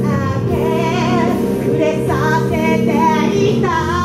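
A young woman singing her own song live into a microphone over instrumental accompaniment, in several short phrases with wavering pitch, going into a long held note near the end.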